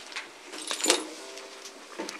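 A few short clinks and rattles of small objects being handled, the loudest about a second in.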